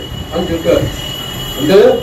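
A man's voice in a few short spoken fragments, with a thin steady high-pitched whine underneath.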